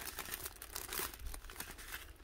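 Clear plastic packaging crinkling faintly as it is handled, with scattered small rustles.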